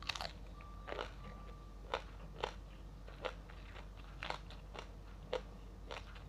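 A person chewing crisp food with the mouth close to the microphone: about ten sharp crunches, spaced roughly half a second to a second apart.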